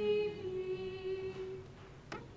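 Unaccompanied voices singing liturgical chant: one long held note that steps down slightly early on and fades out in the last half second.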